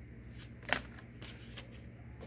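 Oracle cards being handled and drawn from a deck, then laid down: short paper rustles and one sharp card snap about three-quarters of a second in, over a steady low hum.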